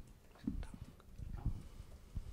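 Faint, irregular low bumps and knocks in a quiet room, about half a dozen of them.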